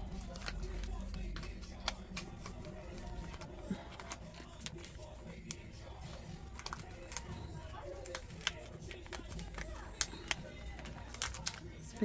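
Paper dollar bills and a clear plastic binder sleeve rustling and crinkling as the money is handled and slid into the pocket, with many small sharp crackles scattered throughout.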